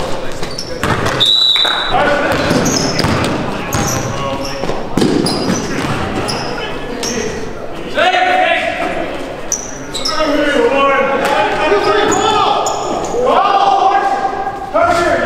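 Basketball game play in a gymnasium: a ball bouncing on the wooden court and off the backboard and rim, sneakers squeaking on the floor, and players calling out, all echoing in the hall.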